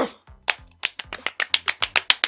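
A run of sharp ticks that starts about half a second in and speeds up to about eight a second, a fast-ticking clock sound effect marking hours passing in a time-skip.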